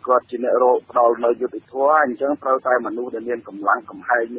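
Continuous speech from a Khmer-language radio news broadcast, with the thin sound of radio audio.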